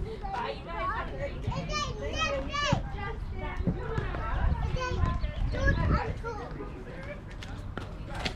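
Indistinct talk from several people, a young child's high voice among them, thinning out near the end.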